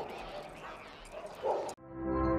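A dog barking in the background over street ambience, a short bark right at the start and another about a second and a half in. The sound cuts off abruptly near the end, and steady music begins.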